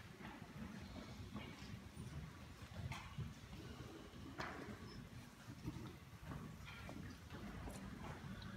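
Quiet concert-hall ambience between pieces: a low steady rumble with scattered faint knocks and clicks as seated musicians and the audience shift and handle instruments and stands.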